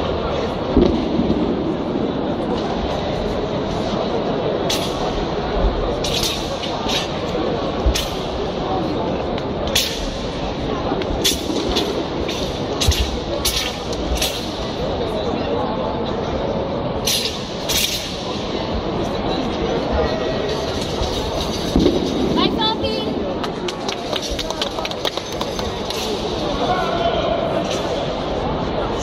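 Continuous murmur of many people talking in a large sports hall, with sharp cracks at irregular intervals, mostly in the first two-thirds, from a thin, flexible wushu straight sword being snapped and whipped during a form.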